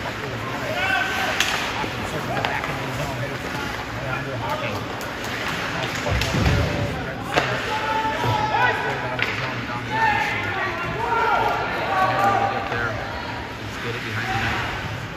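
Ice hockey game in an indoor rink: indistinct shouts from players and spectators over sharp clacks of sticks and puck on the ice, with a dull thump about six and a half seconds in.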